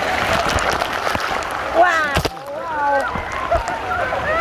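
Water splashing and churning right at a camera held at the water's surface, then voices calling out from about two seconds in.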